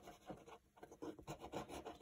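Eraser rubbing on drawing paper in faint, irregular scrubbing strokes, rubbing out pencil construction lines.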